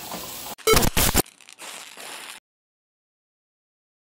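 Chicken frying in a pan, with a steady sizzling hiss that cuts off abruptly about half a second in. Two short, loud scuffing noises follow, then faint noise that gives way to dead silence for the last second and a half.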